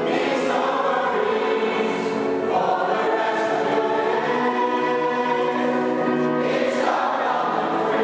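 Mixed choir singing in parts, sustained chords with new chords entering about two and a half seconds in and again near the end, in the echo of a large stone church.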